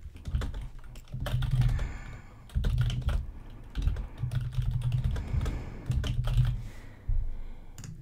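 Typing on a computer keyboard: runs of keystrokes in several short bursts with brief pauses between them.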